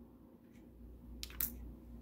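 Light clicks, two sharper ones close together about a second and a quarter in, over a low steady hum.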